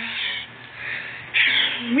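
Two short raspy, breathy noises from a person's voice, about a second apart, in a pause between sung notes.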